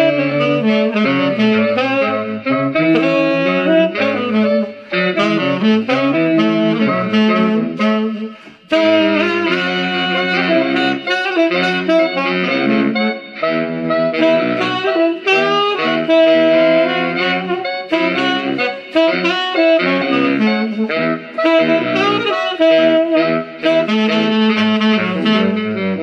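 Tenor saxophone playing a continuous run of phrases in a pop-soul style, with a brief break about eight seconds in.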